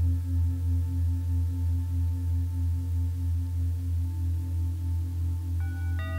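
Deep, steady singing-bowl tone that wavers in a slow regular pulse, starting suddenly; higher ringing tones join in near the end.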